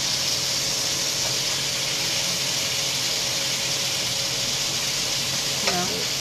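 Boneless chicken thighs frying in a skillet of bacon grease, giving a steady sizzle, while tongs move the pieces in the pan.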